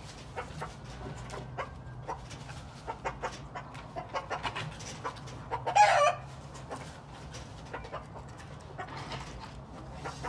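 Game fowl clucking in short, repeated clucks, with one louder, higher-pitched call a little before six seconds in.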